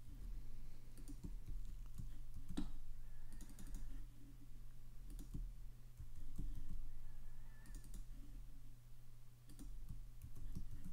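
Scattered computer mouse clicks and keyboard keystrokes at irregular intervals, over a steady low electrical hum.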